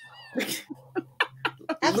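Quiet, broken laughter from several women, opening with a brief high squeal, over a faint steady hum.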